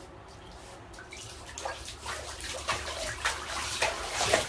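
Bathwater splashing and sloshing around a dog in a tub: little is heard in the first second, then irregular splashes start and grow louder toward the end.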